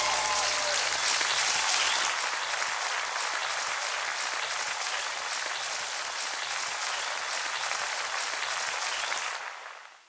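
Audience applauding as the last held notes of the song die away in the first second. The applause fades out near the end.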